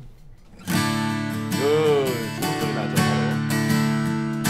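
Cort Gold-Edge LE grand auditorium acoustic guitar (solid torrefied Sitka spruce top, myrtlewood back and sides) strummed in full chords, its unplugged sound taken by a condenser mic. The strumming starts just under a second in and rings on through repeated strokes.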